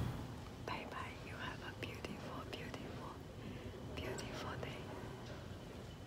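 A woman whispering softly in short breathy phrases with brief pauses, the words too faint to make out.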